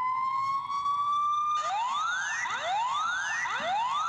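Electronic police-siren alarm sound from a Samsung smart security camera's siren feature. It starts as a long, slowly rising wail, then about a second and a half in switches to quick repeated rising sweeps, a yelp pattern.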